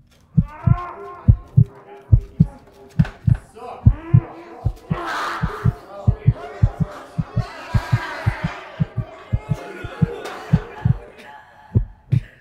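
Heartbeat sound effect: deep double thumps that come faster toward the middle and slow again near the end, under swelling, overlapping voices.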